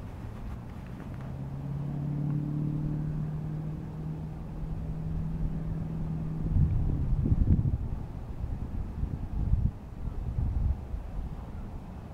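A distant engine hums steadily at one low pitch for several seconds, then gives way to irregular low rumbles.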